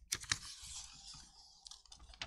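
Sheets of paper handled close to a desk microphone: two sharp clicks just after the start, then a rustle lasting about a second.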